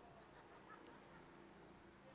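Near silence: faint outdoor background ambience with a few weak pitched sounds.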